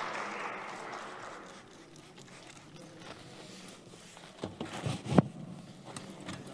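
Applause in a large assembly hall dying away over the first second or so, leaving a quiet hall. Near the end there are a few sharp knocks, the loudest about five seconds in.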